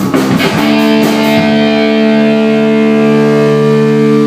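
Rock band's distorted electric guitar playing a few quick chord strokes, then holding a single chord that rings on steadily.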